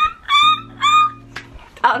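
Three short, high-pitched dog-like yips from a woman's voice, each dropping slightly at the end, over soft guitar background music.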